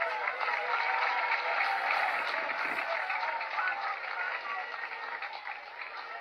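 Audience applauding with some cheering voices, starting suddenly and slowly dying away over the last couple of seconds.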